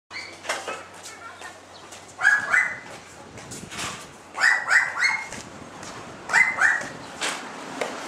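An animal calling: short pitched calls in a group of two, then three, then two, with a few sharp clicks between.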